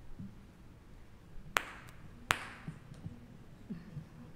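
Two sharp knocks about three-quarters of a second apart, each with a short ringing tail in the room, amid faint low handling noises.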